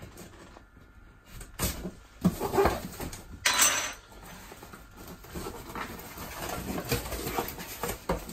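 Cardboard box of a water booster pump being handled and opened by hand: a few short scrapes and rustles of the box and its flaps. The loudest is a brief scraping rush about three and a half seconds in.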